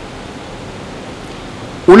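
Steady, even hiss of room and microphone background noise during a pause in a man's speech; his voice starts again near the end.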